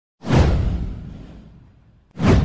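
A whoosh sound effect with a deep boom under it, starting sharply about a quarter second in and fading away over about a second and a half.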